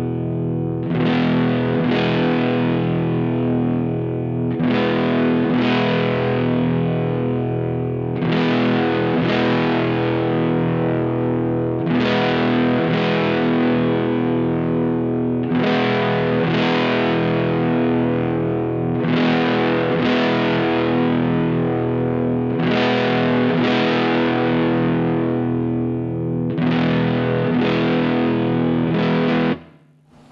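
Telecaster on its neck pickup played through a single-EL84 Class A valve amp (a Vox AC4 modded as a Marshall Class 5 clone) and an analog cab sim, in an overdriven tone. Chords are strummed in pairs about every three and a half seconds and left to ring, while the middle control is swept, and the tone changes only slightly. The playing stops near the end.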